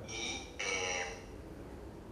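A man's voice coming over a video call through room loudspeakers, thin and reverberant: two short phrases early on, then a pause.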